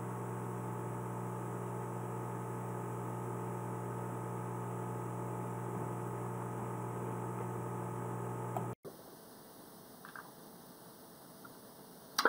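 Steady electrical hum, a stack of low, even tones, that cuts off suddenly about three-quarters of the way through, leaving near silence.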